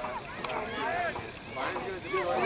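Distant, overlapping voices of players and sideline spectators calling out across an open soccer pitch, with light wind noise on the microphone.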